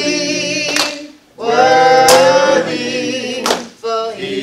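A woman singing unaccompanied into a microphone, long held notes that break for a breath about a second in and again near the end, with three hand claps keeping time.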